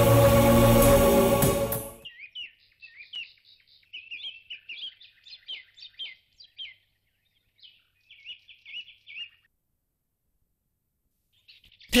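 Background music that cuts off about two seconds in, followed by birds chirping in quick repeated trills for several seconds. The chirps stop a couple of seconds before the end.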